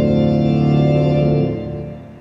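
Recorded music played through a hi-fi system's Martin Logan Clarity loudspeakers: a held, organ-like chord that ends about one and a half seconds in and fades away.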